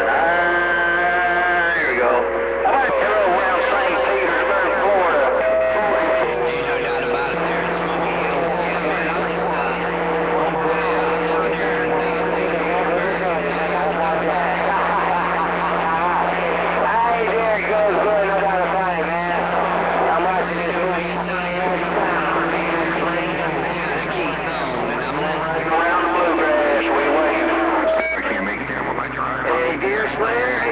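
CB radio receiving 11-meter skip on a strong signal: several distant stations talking over one another, garbled and hard to make out, with steady whistle tones held for several seconds at a time under the voices.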